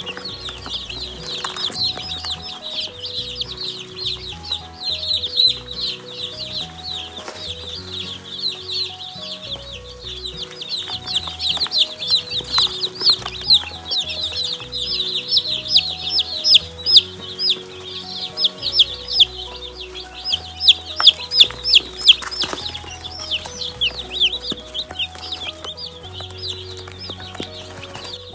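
A brooder full of two-day-old Jumbo Cornish Cross broiler chicks peeping, many at once, in a dense, continuous chorus of short high cheeps that gets busier and louder through the middle stretch. Background music plays underneath.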